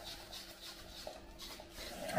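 Faint scraping of a spoon rubbing against a fine mesh sieve as a blended spinach cream sauce is pushed through it.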